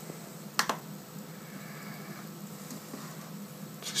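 A sharp double click about half a second in, over a steady low hum.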